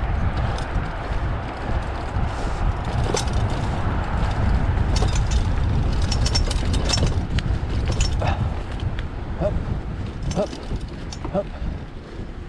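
Mountain bike rolling fast down a dirt singletrack over dry leaves, with a steady wind rumble on the body-mounted camera's microphone, tyre noise and frequent clicks and rattles from the bike over bumps.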